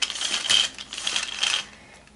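Bubble-tastic mermaid doll's bubble-making tail mechanism running, a rapid, irregular plastic clicking and rattling that fades out about a second and a half in.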